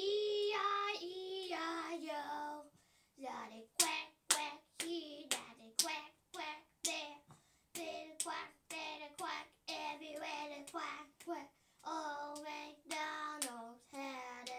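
A young girl singing a children's song, clapping her hands in time at about two claps a second from a few seconds in.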